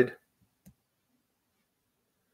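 The end of a spoken word, then a single faint click about two-thirds of a second in, the click of a computer mouse turning the page of an on-screen e-book, then silence.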